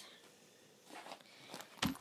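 Faint rustling of a cloth bag being handled, then a single soft thump near the end as the bag is set down on a carpeted floor.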